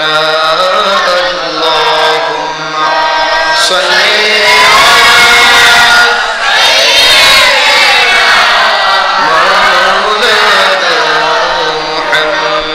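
Male voice chanting a melodic religious recitation in long, drawn-out, ornamented phrases, with no spoken words. It grows louder and higher in the middle.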